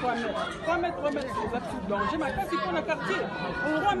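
Speech: a woman talking into a handheld microphone, with the chatter of other voices around her.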